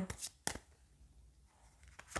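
A deck of tarot cards being shuffled in the hands: a few short card clicks and snaps in the first half second.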